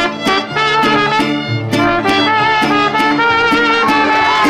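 Mariachi music: trumpet melody over strummed guitars, with a quick, steady beat.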